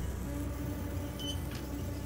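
Cartoon soundtrack drone: a low steady hum with sustained eerie held tones above it, with a short high blip and a faint click about one and a half seconds in.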